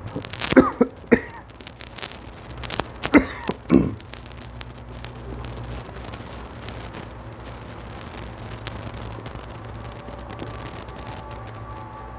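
A man coughing and clearing his throat in two short bouts, one just after the start and one about three seconds in. After that a steady low hum continues.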